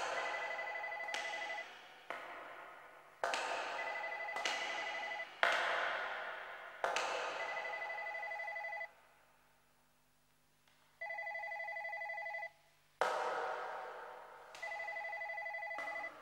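Telephone bell ringing in repeated rings of about a second and a half. Each ring starts sharply and some overlap, with a short quiet gap near the middle. It is quieter than the music around it.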